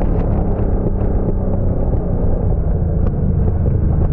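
Onboard sound of a Yamaha R1 racing motorcycle's inline-four engine running hard at a steady pitch, with wind noise on the bike-mounted camera.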